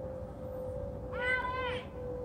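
A single high-pitched, drawn-out voiced exclamation lasting under a second, about a second in, over a steady hum.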